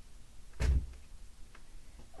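A single dull thump about half a second in, as a book package is set down on a shipping scale, then a light click about a second later.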